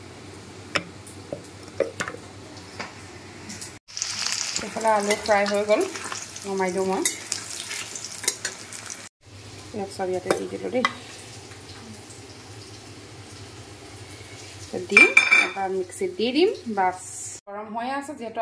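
A spoon stirring and clinking in a stainless steel bowl, mixing dry ground spices, with kitchen clatter. Near the end, oil sizzling briefly in a kadai.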